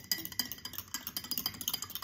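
A spoon stirring small rocks in liquid inside a glass, making quick, irregular clinks and clicks against the glass.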